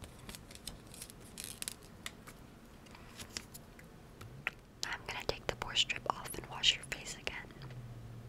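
Close-miked ASMR handling of a thin sheet face mask, with light ticks and taps at first. Soft whispering and rustling grow louder in the second half as the sheet is brought up to the microphone.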